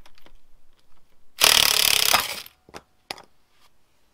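Cordless impact gun running for about a second, spinning the top mount locking nut off an old coil-spring suspension strut. A couple of sharp clicks follow.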